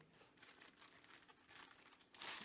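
Near silence, with faint crinkling from a bagged comic book being handled.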